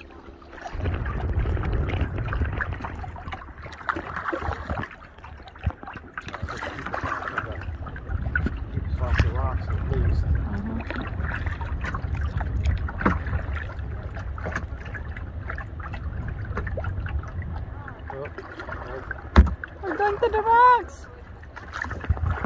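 Kayak paddles dipping and splashing, with scattered clicks and knocks against the hull over an uneven low rumble. A single sharp knock near the end is the loudest sound, followed briefly by a voice.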